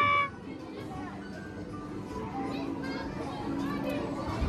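Busy arcade-room noise: game-machine music and sounds mixed with children's voices and chatter. A loud held tone cuts off just after the start, and the room sound that follows is quieter.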